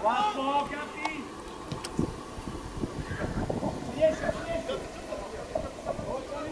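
Football players shouting to each other on the pitch: a loud call right at the start, then more shouts a few seconds in, with a few low thuds in between over open-air background noise.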